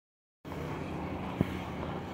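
A vehicle engine running steadily, coming in about half a second in, with one sharp click partway through.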